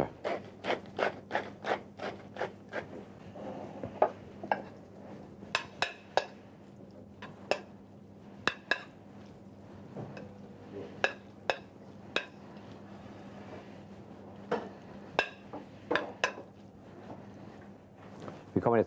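Hand pepper mill grinding black pepper in a quick run of clicks for the first few seconds. Then a metal utensil taps and scrapes irregularly on a porcelain plate as lobster tartar is spread around it.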